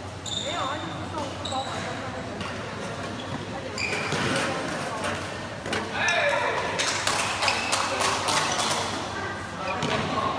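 Badminton rackets hitting a shuttlecock and shoes squeaking on the court floor over steady crowd chatter in a sports hall. The sharp hits come thickest in the second half.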